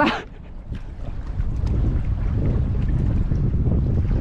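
Wind buffeting the camera microphone out on open water: a steady low rumble.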